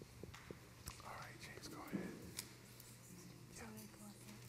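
Quiet room with faint murmured voices, close to a whisper, and a few small scattered knocks and clicks.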